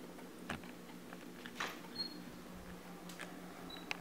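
A few faint knocks and clicks of a handheld camera being moved, over a low steady hum in a quiet room.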